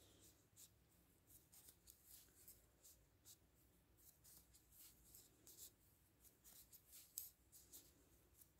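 Faint, irregular light clicks and scrapes of metal knitting needles and yarn as stitches are purled, with one slightly louder click about seven seconds in.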